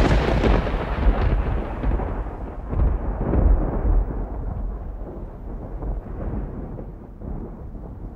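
Thunder sound effect: loud at the start, then a deep rolling rumble with a few further swells and crackles that slowly fades away.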